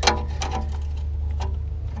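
A few light clicks of a hand tool at the oil-pan drain plug under the van: one sharp click at the start, then faint scattered ticks. A steady low hum runs underneath.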